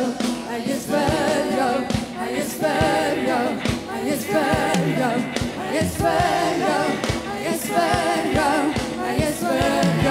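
Live worship music: women singing into microphones with a wavering vibrato over a drum kit beating steadily.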